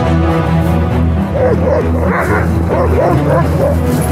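Background music with sustained tones. Over it, from just over a second in until near the end, Alaskan Malamute sled dogs are whining and yipping with a wavering pitch.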